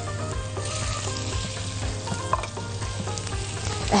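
Minced garlic sizzling as it fries in hot ghee in an aluminium frying pan, stirred with a silicone spatula: the start of the garlic frying for a taqleya.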